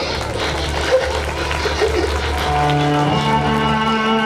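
A girl's crying voice, then background music with long held notes coming in about two and a half seconds in.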